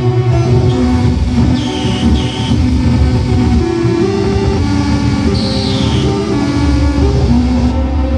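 Live electronic noise improvisation from tabletop electronics with no traditional instruments. A dense, loud low drone runs under sustained tones that step from pitch to pitch. High whistling tones come in about two seconds in, and a high tone falls in pitch past the middle.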